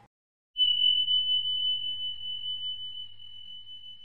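A single high, steady electronic beep tone, starting about half a second in and held for about three and a half seconds while it slowly fades, over a faint low hum.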